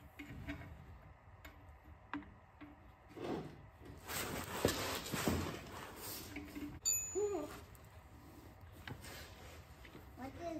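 Handling noises at the brake drum: a few light clicks and knocks, a stretch of rustling in the middle, and a short clink with a ringing tone a little before the last third.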